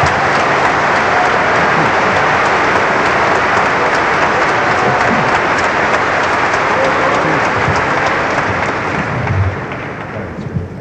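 Audience applauding steadily, thinning out near the end.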